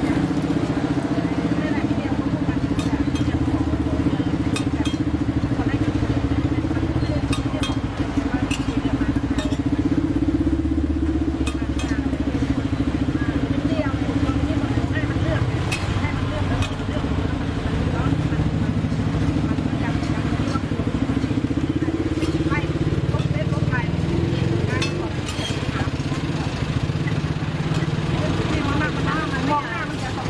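A steady low engine-like drone runs throughout, with scattered light metal clicks and scrapes of a spatula and fork on a flat steel roti griddle.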